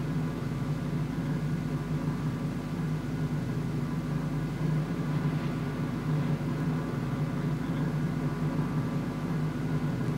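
Steady low machine hum that holds level throughout and stops about a second after the end.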